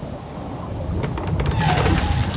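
Thunderstorm sound effect: thunder rumbling over rain, growing steadily louder, with a hissing rush swelling near the end.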